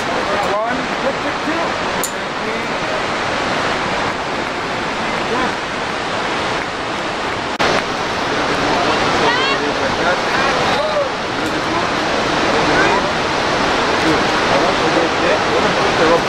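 Steady rushing noise of the waterfall and the river in the gorge below, with faint voices in the background.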